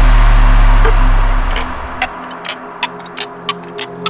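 Electronic background music: a heavy low bass that drops away about a second and a half in, leaving soft held tones and sparse ticking clicks.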